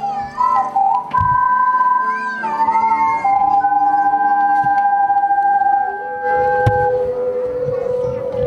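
An ensemble of ocarinas playing a slow tune in several harmony parts, with long held, pure notes. In the second half the held notes move lower.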